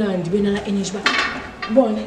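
A woman's voice talking, with a brief noisy rattle about a second in.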